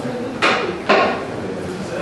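Two sharp, clattering knocks of hard objects about half a second apart, the second the louder.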